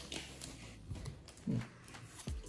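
Pokémon trading cards being slid through in the hand, giving faint rustles and light clicks, with a short hummed "hmm" from a man about one and a half seconds in.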